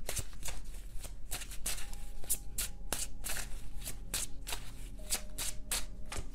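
A deck of tarot cards being shuffled by hand: a rapid, uneven run of crisp card flicks and riffles, several a second.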